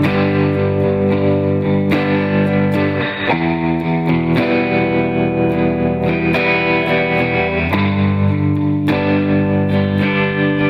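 Electric guitar through an amplifier, playing a sequence of sustained chords that changes chord several times.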